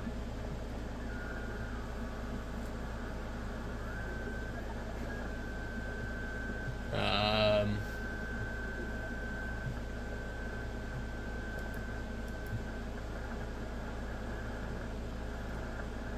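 Shortwave receiver audio from an SDRplay RSP1A tuned around 7.1 MHz in the 40-metre band: steady band static with a low hum under it, and a thin steady whistle, the beat tone of a carrier, for several seconds in the middle. About seven seconds in, a brief voice sounds for under a second.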